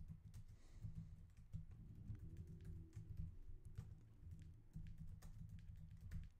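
Faint typing on a computer keyboard: an irregular, quick run of key clicks.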